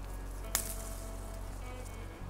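Quiet outdoor background: a faint steady hiss over a low hum, with one brief sharp click about half a second in.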